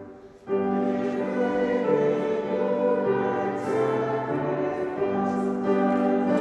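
A hymn sung by voices with sustained organ accompaniment, the notes held and stepping from one to the next. The music breaks off for about half a second just after the start, then comes back in.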